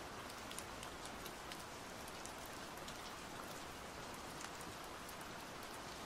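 Faint, steady rain ambience: an even hiss of rainfall with many small drop ticks.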